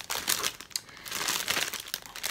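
Plastic packaging crinkling and crackling as it is handled, an irregular run of small crackles.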